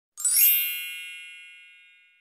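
A single bright, shimmering chime sound effect for a logo reveal. It strikes about a quarter second in and rings out, fading away over the next two seconds.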